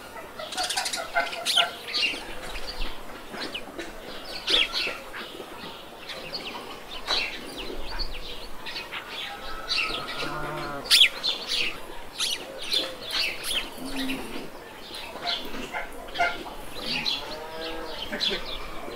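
Chickens calling: a steady run of short, high chirps, with lower clucks among them.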